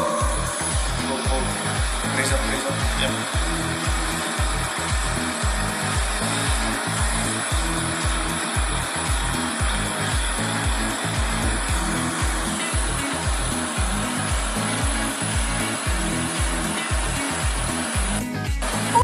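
Whole-body vibration plate running with a steady mechanical buzz, over background music with a steady beat.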